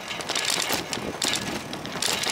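A bicycle rolling over brick paving: tyre noise with irregular swells of hiss and scattered rattling clicks.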